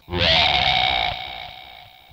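A short electronic transition sting for a show's title card. It starts abruptly with several steady tones held together, a slight upward glide at the start, and fades away over about a second and a half.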